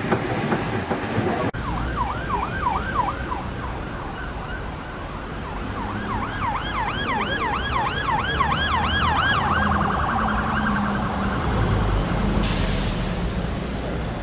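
Emergency-vehicle siren sounding a rapid yelp of about three rising-and-falling sweeps a second. It pauses briefly, resumes, then turns to a fast steady warble, over a low rumble of traffic.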